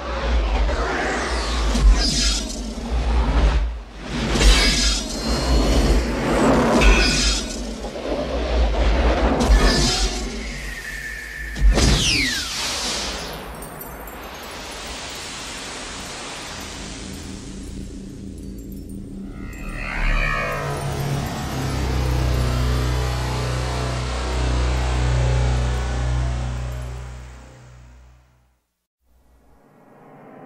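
Cinematic intro sound design: a dense run of crashes and whooshes for about twelve seconds, ending in a falling sweep. A steady hiss follows, and from about twenty seconds a deep sustained drone swells, then fades out near the end.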